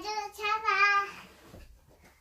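A young child's high-pitched singsong voice: one sung-out call, held for about a second with a slight wobble in pitch, then stopping.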